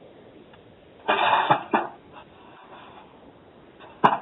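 A person coughing over a telephone line: one rough cough about a second in, followed by a smaller one, over faint line hiss.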